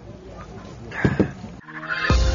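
A chicken calls briefly about a second in, over a quiet outdoor background. Music starts just before the end.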